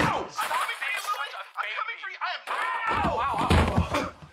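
A toddler crying, in wavering high-pitched wails, with a low thud near the end.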